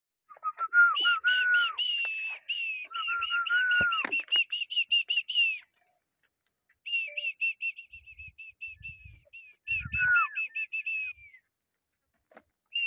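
A bird calling in a fast, even series of high chirps, about six a second, in two long runs with a short pause between them.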